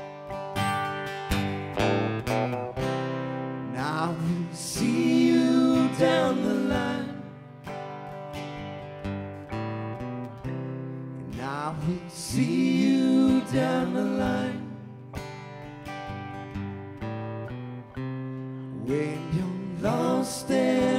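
Live band instrumental break: a lead guitar solo with repeated string bends over strummed acoustic guitar and a steady chordal backing.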